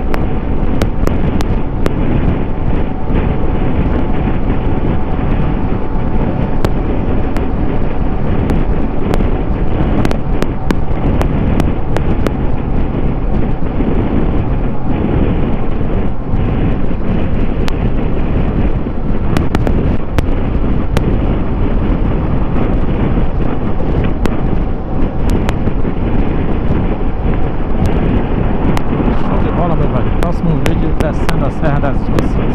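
Steady wind rush buffeting the microphone of a Kawasaki Versys 650 parallel-twin motorcycle cruising at highway speed, with engine and tyre noise underneath and scattered small clicks. The engine note shifts near the end.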